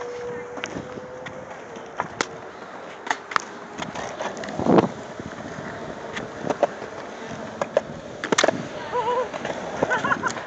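Skateboard wheels rolling on concrete, with scattered sharp clacks and knocks of the board, the heaviest a thump about halfway through.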